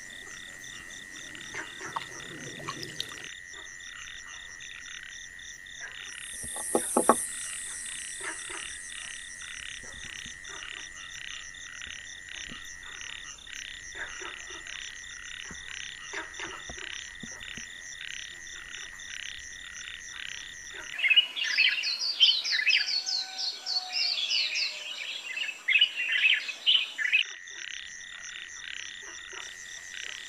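Night-time insect chorus: a steady, high trill with an even pulsing rhythm. From just past the middle, a louder burst of rapid chirping calls joins it for about six seconds. A few soft clicks are heard now and then.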